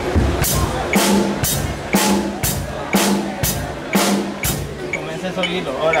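A drum kit playing a simple steady beat in time to a metronome, at about 120 beats a minute: even strokes about twice a second, with a heavier drum hit on every other one. The beat stops about four and a half seconds in.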